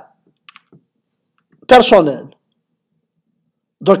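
A man's speech with a pause: he says one short word about two seconds in and starts talking again near the end. Two faint clicks come about half a second in.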